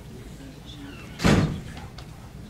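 A single loud thump about a second and a quarter in, lasting about a quarter of a second.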